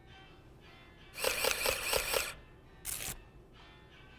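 Handheld electronic label maker printing: a buzzing whirr of about a second that pulses about six times a second, then a single sharp snap as the label is cut off. Faint music runs underneath.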